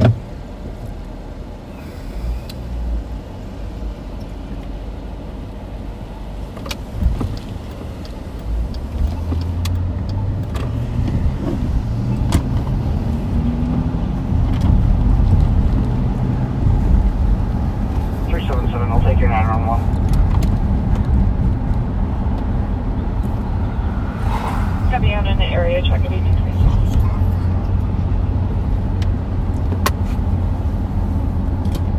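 Car engine and road noise heard from inside a moving patrol car. It starts as a low idle and grows louder as the car pulls away and gets up to speed about nine seconds in.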